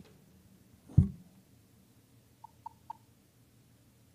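A single loud, low thump about a second in, then three short high beeps about a quarter second apart near three seconds in.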